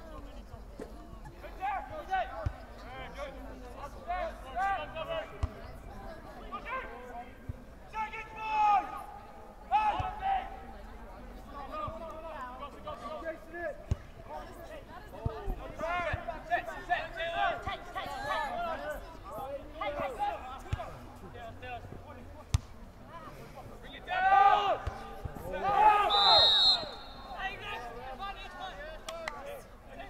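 Players shouting to each other across a soccer pitch, with ball kicks thudding now and then. A loud burst of shouting comes near the end, and a referee's whistle blows briefly during it.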